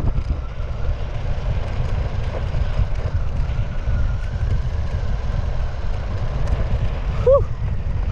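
Electric scooter ridden at speed: heavy wind buffeting on the microphone and tyre rumble over asphalt, with a faint, wavering high whine from its single 500 W hub motor.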